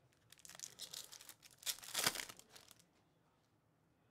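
A foil trading-card pack being torn open and its wrapper crinkled, in two spells of crackling, the second louder, ending about three seconds in.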